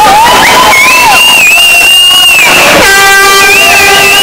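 Air horns blaring over a crowd in a sports hall: high shrill tones slide up and down and hold for about two seconds, then a steady horn blast with a full, buzzy tone starts about three seconds in. The whole is very loud.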